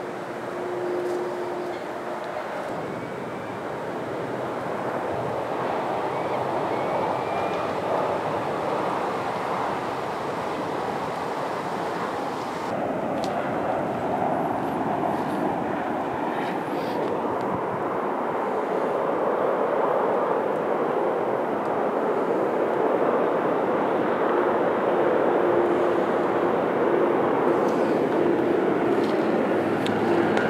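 Steady noise of distant motorway traffic, slowly growing louder.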